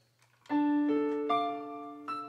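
Casio digital piano playing the opening of a slow song: after a brief hush, a note comes in about half a second in, and two more notes join within the next second, ringing on and slowly fading.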